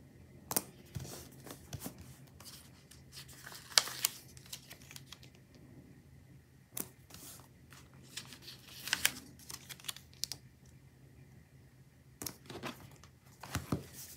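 Glossy paper stickers being peeled off their backing sheet and pressed onto a card planner cover: scattered crinkles, peels and short taps, the sharpest about four seconds in.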